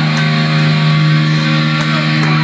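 Live heavy metal band, a distorted electric guitar holding one long, steady ringing note at high volume.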